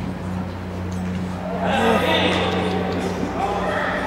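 Voices of players and spectators shouting during a youth indoor football match, swelling about two seconds in, over a steady low hum.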